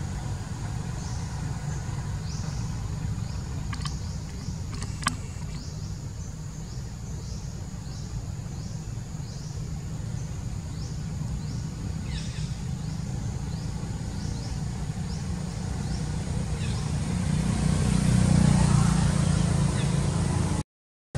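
Low, steady rumble of road traffic that swells with a passing vehicle near the end. Over it, a short high chirp repeats at a steady pace, and there are two sharp clicks.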